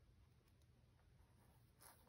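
Near silence: room tone, with one faint tick near the end.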